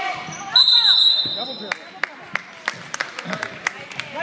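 A referee's whistle blown once, about a second long, starting about half a second in, stopping play. Then a basketball bouncing a few times on the hardwood gym floor, with voices around it.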